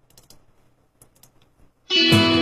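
A few faint scattered clicks, then near the end a song's backing track with guitar starts abruptly and loud.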